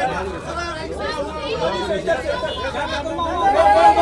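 Overlapping voices of several men calling out at once: press photographers shouting directions at someone posing for them, growing louder near the end.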